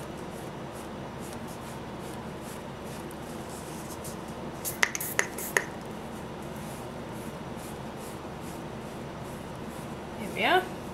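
Steady whirr of an air conditioner running in the room, with a quick cluster of three or four sharp clicks about five seconds in.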